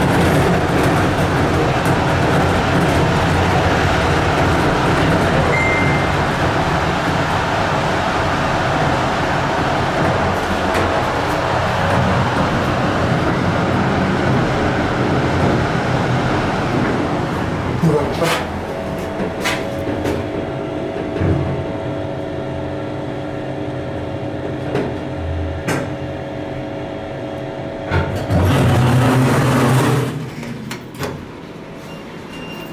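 Running noise of an old Thyssen inclined elevator heard from inside the moving cabin, loud and steady for the first eighteen seconds or so, then quieter with a steady hum and a few clicks, and loud again near the end. The elevator is in very bad shape and due to be replaced.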